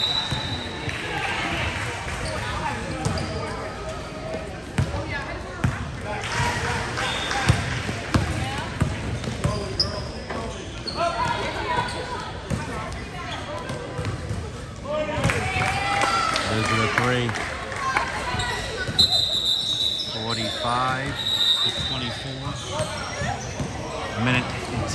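Basketball being dribbled on a gym floor during a game, with voices of players and spectators around it.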